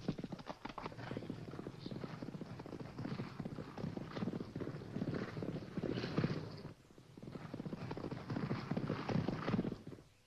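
A single horse galloping over dry ground: rapid, continuous hoofbeats. They ease off briefly about seven seconds in, pick up again, and stop abruptly at the end.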